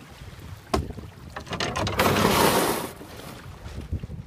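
Knocks against a sailing canoe's hull, then a loud rough scrape lasting about a second as the canoe runs onto the gravel shore.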